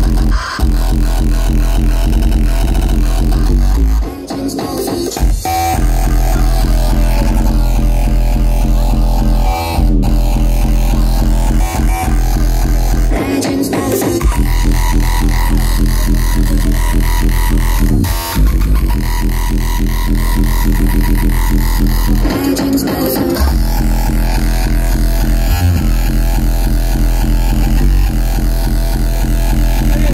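Loud, hard electronic dance music played by DJs over a club sound system, with a heavy continuous bass. The bass drops out briefly about 4 s in, again around 13 s and again around 22 s, then comes back.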